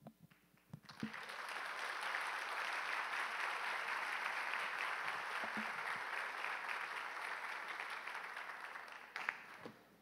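An auditorium audience applauding, starting about a second in, holding steady, then dying away near the end.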